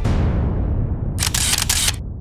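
A low sound dying away, then about a second in a short burst of DSLR camera shutter sound effect: several rapid clicks run together for under a second.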